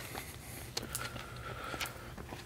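Quiet outdoor background with a low steady rumble and a few faint footsteps on a paved road.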